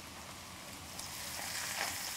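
Flank steaks searing in hot vegetable oil in a skillet: a steady sizzling hiss that grows a little louder about a second in.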